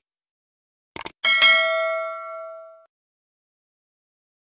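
Short mouse-click sound effects, a double click about a second in, followed by a bell ding that rings on and fades away over about a second and a half. It is the animated subscribe-button click and notification-bell sound effect.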